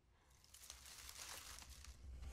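Faint rustling and crinkling of dry leaves under a hand. It starts about half a second in and slowly builds.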